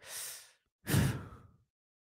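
A man breathing out in a sigh while pausing to think: a faint short breath at the start, then a louder sigh about a second in.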